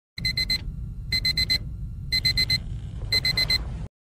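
Digital alarm clock beeping in groups of four quick beeps, one group a second, over a low hum. It cuts off suddenly near the end.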